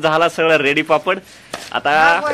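A voice talking in short, lively phrases, with a brief pause a little past the middle.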